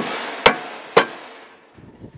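Claw hammer striking three times, about half a second apart, to drive a tapered hardware coupler down into its pocket in a plastic EZ Dock float for a snug fit.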